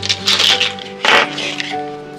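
Plastic felt-tip markers clattering against each other as a handful of them is picked up off paper, with a sharper clack just after a second in, over background music.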